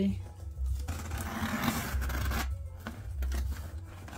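Packing tape being pulled and torn from a cardboard shipping box: a ragged rasp lasting about a second and a half, then a shorter, fainter scrape near the end.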